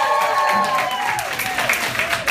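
A group of singers holds the last sung chord, which fades out about a second in, as clapping starts and grows denser, with voices cheering over it.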